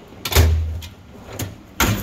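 Steel drawers of a Snap-on roll cart: one drawer slides shut with a heavy thump about half a second in, and another is pulled open with a sharp clack near the end.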